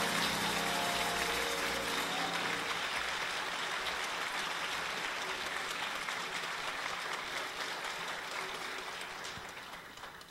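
Audience applauding at the end of a song, with the band's last chord dying away in the first couple of seconds. The applause slowly fades and has nearly died out by the end.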